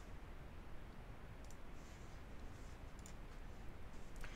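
A few faint computer mouse clicks over a low steady hum, starting about a second and a half in and coming irregularly until near the end.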